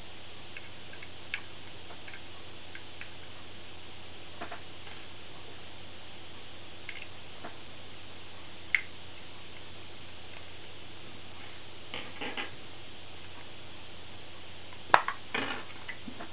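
A small screwdriver undoing the tiny back-panel screws of a Wonder Wand Widebander antenna tuner case: sparse faint clicks and ticks of the driver and screws over steady room hiss. A sharp click about 15 seconds in, near the end, as the back panel comes off.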